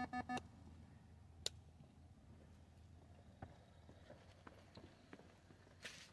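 A run of pitched electronic beeps that step up and down cuts off half a second in, leaving near silence with faint scattered footstep ticks and one sharp click about a second and a half in.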